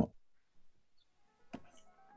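Near silence after the end of a spoken word, with a single faint click about one and a half seconds in, followed by faint steady tones.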